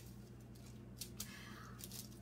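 Faint handling of a fuzzy sock on a plastic tablecloth: soft rustling and a few light clicks over a low steady hum.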